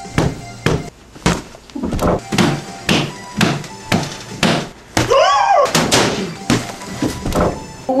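Knocking thuds about twice a second over music, with a voice rising and falling about five seconds in.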